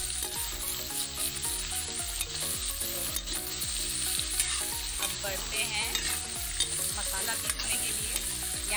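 Raw pumpkin cubes frying in hot mustard oil in a metal kadhai, sizzling steadily while a metal spatula stirs them, with repeated scrapes and clacks against the pan.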